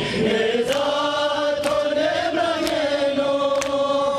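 A group of men chanting a Muharram nauha (lament) together in long, held notes. Rhythmic slaps of hands on chests (matam) land about once a second under the chant.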